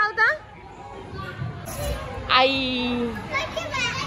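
Children's voices at play: short high-pitched calls at the start, a longer held call about two seconds in and more calls near the end, over the steady background noise of a busy indoor play hall.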